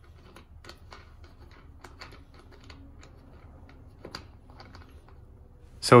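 Faint, irregular small clicks and ticks from a dent puller's parts as it is screwed onto a hot-glued pulling tab.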